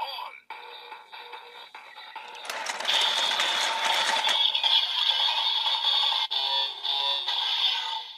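Bandai DX Evol Driver toy transformation belt playing its electronic sound effects and music through its small built-in speaker. About two and a half seconds in a noisy effect sound rushes up for about two seconds, then gives way to louder steady music.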